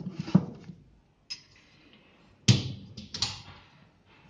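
Books being set into a compartment of a small smart bookcase and its cabinet door being pushed shut: a few knocks and clicks, the loudest a sharp thump about two and a half seconds in.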